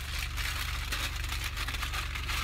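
A large sheet of white tissue paper rustling and crinkling as it is pulled open and lifted out of a shopping bag, over a steady low hum.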